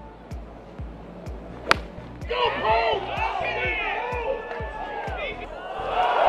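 A golf club strikes the ball off the tee with a single sharp crack about two seconds in. Several voices then shout as the ball flies, all over background music with a steady beat.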